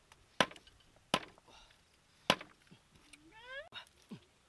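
Knife chopping roasted duck on a wooden chopping block: three sharp chops. Near the end comes a short rising call.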